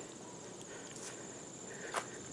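Faint, steady high-pitched trill of crickets, with a few soft clicks and crunches from a bicycle being walked over gravel.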